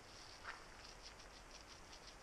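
Faint, quick, rhythmic strokes of a paintbrush on a wooden boat hull as bottom paint is brushed on, with one slightly louder stroke about half a second in.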